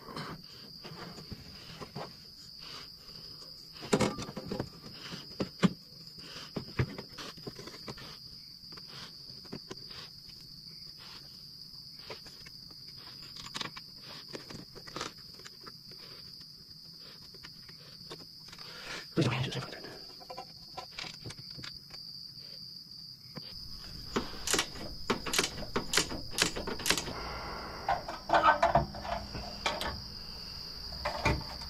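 Crickets chirping in a steady high trill, over scattered clicks and knocks of car parts and tools being handled. The knocking gets busier in the last few seconds.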